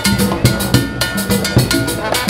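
A brass band playing live: bass drum thumps, drum and cymbal strokes in a steady rhythm, with brass holding notes underneath.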